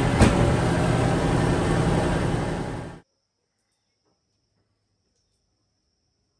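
Large drum sander running loudly and steadily with a steady low hum, as a glued-up eucalyptus slab passes through to flatten the top. There is a sharp knock just after the start, and the sound cuts off abruptly about halfway through, leaving near silence.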